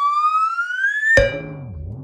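Cartoon-style intro sound effect: a whistle-like tone slides steadily upward in pitch and is cut off a little over a second in by a sharp hit. A low wobbling tone then starts, rising and falling in pitch.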